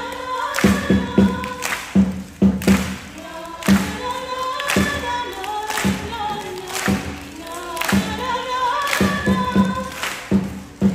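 A live school band's song: a girl sings the lead into a microphone over drums, with a loud hit about once a second and lower thuds in between.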